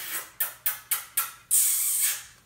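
A person making short hissing 'ts' mouth sounds, about four a second, ending in one longer hiss of about half a second near the end.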